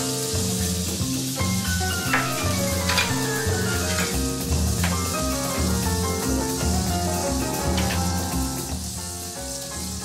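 Fatty pieces of wagyu beef sizzling and crackling on a griddle pan, rendering out their own fat with no oil added. Background music with slow, sustained notes plays under the sizzle.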